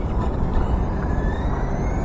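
A steady low rumble, with the faint high whine of an RC buggy's 12-turn Super Stock RZ brushed electric motor as the car drives off. The whine rises slowly in pitch.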